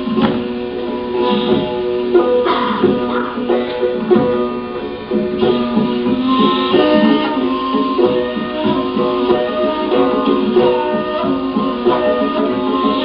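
Classical Persian music on a tar, the Persian long-necked lute, playing a continuous melody of plucked notes.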